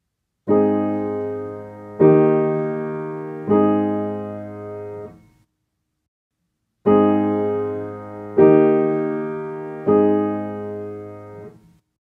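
Piano playing a three-chord I–V–I progression twice. Three block chords are struck about a second and a half apart, each left to ring and fade. After a short pause the same three chords are played again.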